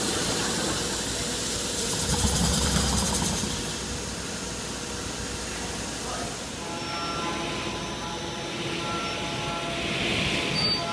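TARUS HM5L horizontal-arm 5-axis CNC machining center with linear motor drive running. A louder low rumble lasts about a second and a half a couple of seconds in, as the head moves away along its axes. After that the machine settles to a steady hum with faint whining tones.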